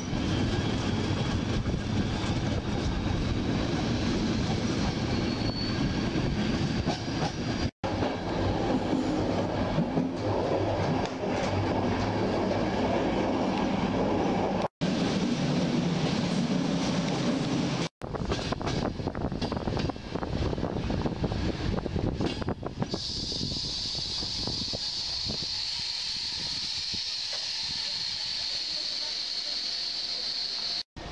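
Passenger train running on rails, heard from inside a coach: a steady rumble and clatter from the wheels, broken by several abrupt cuts. About two-thirds of the way through, the rumble drops and a steady high-pitched squeal takes over.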